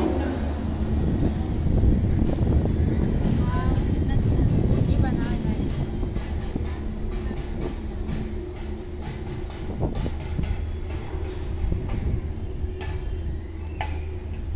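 Rumble and rattle of a ropeway cabin riding its haul cable out of the station, heard from inside the cabin, over a steady hum. The rumble is heaviest for the first several seconds and then eases, with a few light clicks near the end.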